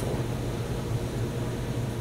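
Steady low room hum with an even hiss, with no other event standing out.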